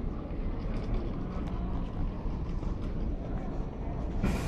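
Airport terminal background noise: a steady low rumble with a few faint clicks scattered through it.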